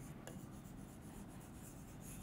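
Faint strokes of a marker writing on a board.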